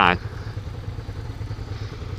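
Motorcycle engine running steadily at low revs in slow-moving traffic, a low even hum.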